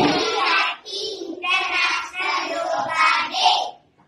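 A group of children's voices chanting together in unison, in several short phrases.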